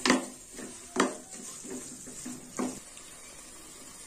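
Wooden spatula stirring herbs into tomato masala in a metal pressure cooker, knocking against the pot three times in the first three seconds, over a faint sizzle of the frying masala.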